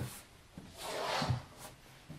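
Soft rustling and rubbing of cardboard board-game boxes being handled and slid out from under a table, lasting about a second, with a faint knock near the end.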